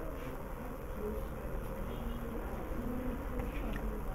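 Steady low background hum with a faint buzz that comes and goes.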